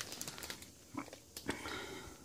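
Faint crinkling of a plastic bread bag being handled and turned over, with a few soft crackles.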